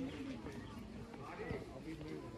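Indistinct background chatter of several people's voices, quiet and overlapping, with no words made out.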